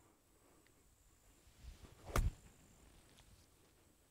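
A golf club striking the ball on a short approach shot from the fairway: one sharp click a little past halfway.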